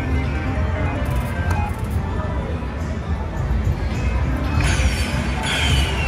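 Slot machine's count-up music and chimes as a bonus win tallies, over steady casino background noise, with a brighter flourish of chimes near the end as the total lands.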